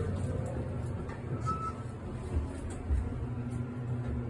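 Thyssenkrupp elevator car travelling down, a low steady rumble heard inside the cab.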